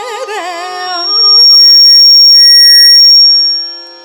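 Loud, steady high-pitched whistle of sound-system feedback swells up about a second in, holds for about two seconds and fades out. It drowns a woman's Carnatic singing, which goes on underneath as a held note over a tanpura drone.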